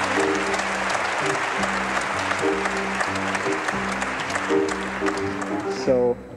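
Audience applauding over a jazz group still playing: low upright bass and piano notes repeat in a steady pattern beneath the clapping. The clapping cuts off near the end.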